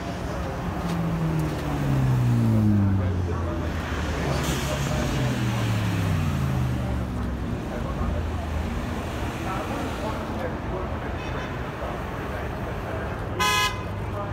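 Two supercar engines pass one after the other, each one's pitch falling as it goes by. Near the end comes a short car-horn toot.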